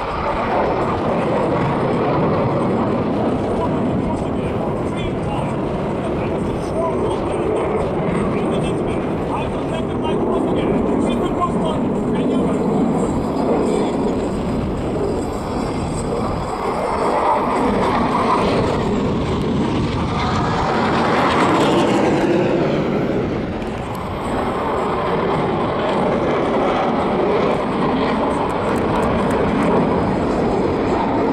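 KAI T-50 jet trainer's single turbofan engine heard from the ground during an aerobatic display: a continuous jet noise. It swells about halfway through as the jet passes, its pitch sweeping up and then down, and eases off a couple of seconds later.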